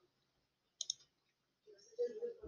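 A single computer mouse click, a quick double tick of press and release, a little under a second in, over near silence.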